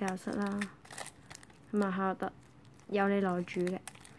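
Clear plastic card packaging crinkling in short crackles as the bagged cards are handled, with a woman talking over it in three short phrases.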